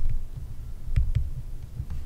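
Pen stylus writing on a tablet: irregular low thuds with a few faint ticks as the word is written.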